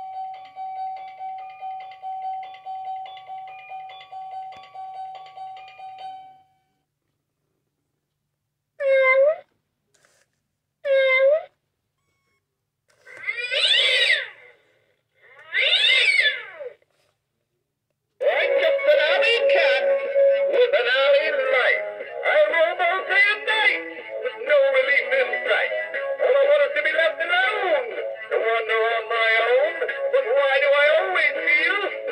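An electronic tune over a held tone runs for about the first six seconds and stops. After a pause, an animatronic black cat decoration gives two short recorded meows and two longer yowls, then plays a sung novelty song through its speaker.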